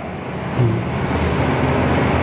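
Steady rushing background noise with a low hum underneath, in a break between spoken phrases.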